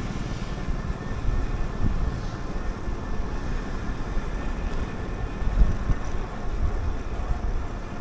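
Steady wind rumble on the microphone and tyre noise from an electric trike being ridden along a paved street at about 13 mph.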